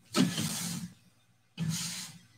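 A stack of cellophane-wrapped trading card packs being slid and handled on a table: two rustling scrapes, each under a second long.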